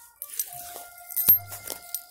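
Footsteps and handling noise moving through forest undergrowth, with a few short sharp snaps or clicks, the loudest about halfway through, over a faint steady high tone.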